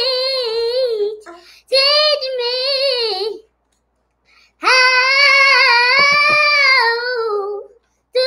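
A young girl singing alone: slow, held notes with a quavering pitch, in three phrases. There is a short break after the first phrase and about a second of silence after the second, and the long last phrase fades out near the end.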